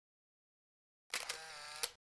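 A short camera-shutter-like transition sound effect about halfway in: a sharp click, a brief hiss and a second click, all in under a second.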